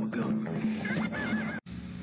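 Cartoon-style TV commercial jingle with a zebra's whinny about a second in. The music cuts off abruptly near the end.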